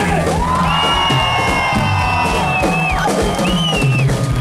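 Rock band playing live, with bass and drums under a long held high note that lasts about two seconds, then a shorter note that bends up near the end.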